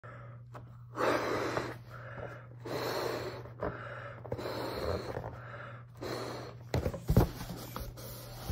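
A latex balloon being blown up by mouth: four long breathy puffs into its neck, each about a second, with short pauses for breath between them. A few short knocks and rubs of the stretched balloon come near the end.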